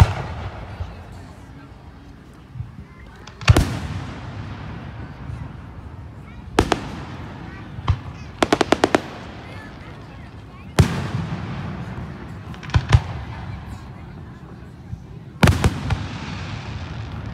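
Fireworks going off: single sharp bangs every few seconds, some fading out in an echo, with a quick string of about six cracks in the middle.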